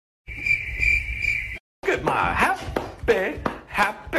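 A steady high-pitched tone lasting just over a second, then a person talking.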